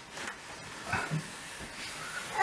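Faint handling sounds: a few soft knocks and a brief scrape as the plastic unit of a Prana wall-mounted heat-recovery ventilator is gripped and slid out of its wall sleeve.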